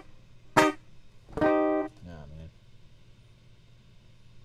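Guitar notes played singly: a short clipped stab about half a second in, then a held note about a second later.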